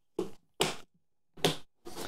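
Plastic latch clips on a cereal-container filament drybox snapping shut: four short, sharp clicks spaced unevenly across two seconds.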